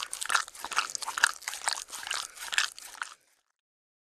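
Chewing sound effect: a character munching something crunchy in quick, irregular bites, several a second, stopping about three seconds in.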